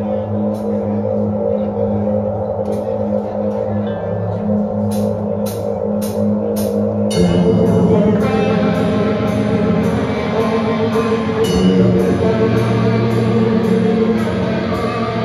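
A metal band playing live, opening a slower song: low held guitar notes with scattered cymbal strikes, then about seven seconds in the full band comes in with drums and a steady cymbal beat.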